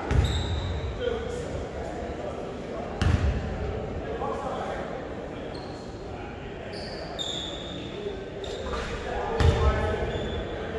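A basketball bouncing on a hardwood gym floor, a few separate thuds, with short high sneaker squeaks and indistinct voices, all echoing in the large gym.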